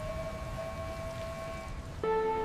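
Sound-designed floodwater: a low, rushing rumble of surging water with a single steady high tone held over it, the tone fading out just before the end.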